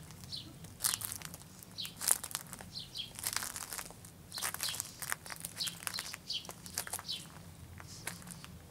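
Footsteps crunching on a gravel path, with many short, downward-sliding bird chirps throughout.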